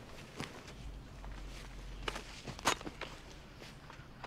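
Footsteps of a soldier in the film's soundtrack: a few uneven steps on forest ground, the loudest about two-thirds of the way through, over a low hum.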